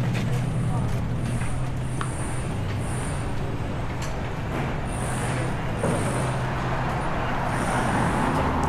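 Street traffic, with a motor vehicle's engine running at a steady low hum and people talking.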